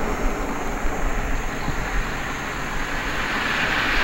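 Road traffic on a highway: cars approaching and passing, a steady rush of tyre and engine noise with a low rumble, getting a little brighter toward the end.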